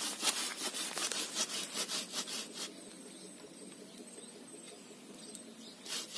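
Hand saw cutting through a waru (sea hibiscus) branch in quick back-and-forth strokes, about four a second. The sawing stops about two and a half seconds in.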